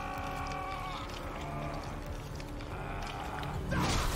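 A cartoon character's long, held scream from the show's soundtrack, strongest at first and then slowly fading. A short noisy hit comes near the end.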